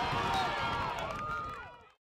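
Several voices shouting and cheering on a lacrosse field right after a goal, fading out just before the end.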